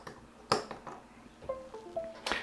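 A sharp click as the cable is pushed into the flight controller, then about a second later a few short, falling chime notes: a device-connected chime as the flight controller powers up.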